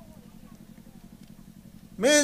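A pause in the speech, leaving a faint, low, steady hum in the background.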